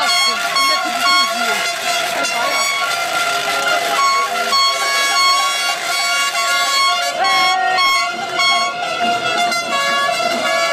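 Many car horns honking at once, short and long blasts at several pitches overlapping, over a crowd shouting.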